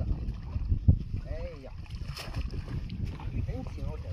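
Wind rumbling on the microphone and water moving around a small boat while a cast net is hauled in by its rope, with a knock about a second in and a brief splashy hiss about two seconds in.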